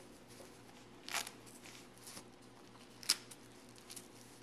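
Cloth diaper cover being fitted and fastened over a folded prefold diaper: soft fabric handling, a short rustle about a second in, and a brief sharp click about three seconds in.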